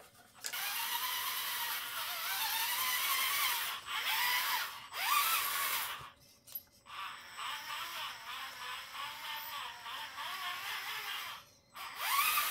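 Radio-controlled scale crawler's electric motor and gears whining as it drives, the pitch rising and falling with the throttle and cutting out briefly a few times. In the second half a regular clicking, about three a second, runs under the whine.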